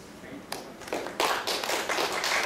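An audience applauding, starting about half a second in and building quickly to steady clapping.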